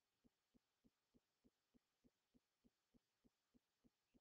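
Near silence, with a very faint, even pulse about three times a second.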